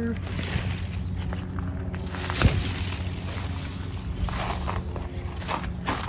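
Handling noise from a handheld phone moving through grapevine leaves, with a sharp knock about two and a half seconds in and a few brief rustles near the end, over a steady low hum.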